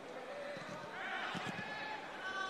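Faint on-pitch sound of a football match: distant shouts and calls from the players, with a dull thud about one and a half seconds in.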